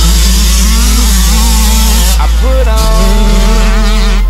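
Dirt bike engines revving, their pitch rising and falling as the bikes race through a turn. They are mixed under a hip hop backing track with a loud, deep, held bass note that changes near the end.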